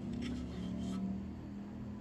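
Faint handling of a plastic model kit hull: a few light taps and rubs as it is moved, over a steady low hum.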